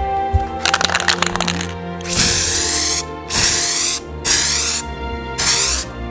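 Background music, over which comes a quick run of crackling clicks and then four loud hissing bursts of about half a second each.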